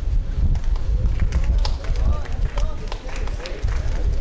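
Faint, indistinct voices over a steady low rumble, with a few short clicks.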